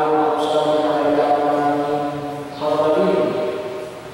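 A man's voice chanting a liturgical text into a hand-held microphone, in long notes held on a level pitch. A second phrase begins a little before three seconds in and fades before the end.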